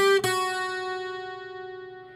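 Acoustic guitar: two single notes picked one after the other on the high E string, third fret then second, played without a hammer-on. The second note rings on and slowly fades.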